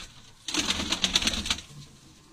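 A hand-held Mardin tumbler pigeon flapping its wings, a rapid burst of feather flutter and rustle lasting about a second, starting about half a second in.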